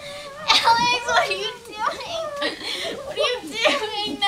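A person's high-pitched voice in short phrases, its pitch sliding up and down, with no clear words.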